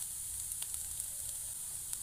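Potato and pea stuffing frying in a nonstick pan, a steady soft sizzle with a few faint clicks.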